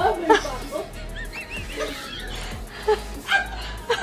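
A woman laughing hard in repeated high-pitched bursts, over background music.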